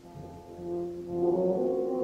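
A concert band with a solo euphonium playing held brass notes. The notes start soft and swell louder from about a second in.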